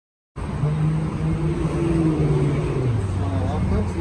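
A road vehicle's engine running with a steady low hum that drops in pitch about three seconds in. The sound cuts in after a moment of dead silence at the start.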